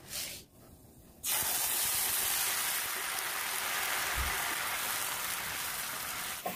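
Sugar and water hissing hard in a hot pan as the syrup comes to a boil, a loud steady hiss that starts abruptly about a second in.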